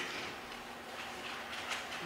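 Faint room tone with a steady low hum and a couple of soft ticks, in a pause between spoken words.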